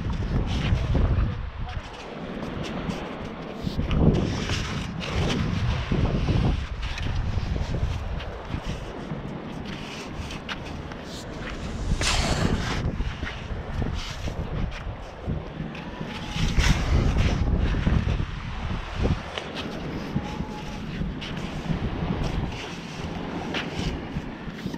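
Wind buffeting the microphone in uneven gusts, with a metal sand scoop digging and crunching into beach sand and a few sharp scrapes.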